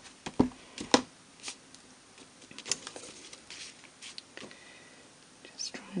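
Handling noise from rubber stamping: a clear acrylic stamp block and ink pad being tapped and set down on paper on a craft table. There is a sharp click about a second in and scattered light taps after it.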